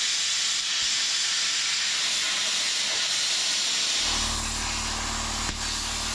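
Angle grinder cutting into the steel spring perches and shock mounts on a 14-bolt rear axle, a steady hiss of grinding metal. About four seconds in, a low steady hum joins it.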